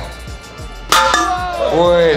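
A single sharp knock about a second in, heard over background music and shouting voices.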